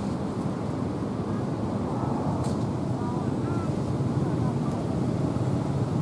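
Steady low outdoor background noise with faint, indistinct voices in it.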